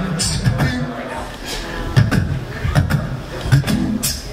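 Live a cappella vocal looping: a beatboxed rhythm of sharp clicks and low thumps, a few a second, layered under held low sung notes.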